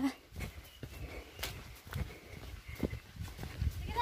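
Footsteps on a dirt woodland path strewn with leaves, a soft, uneven thud about every half second.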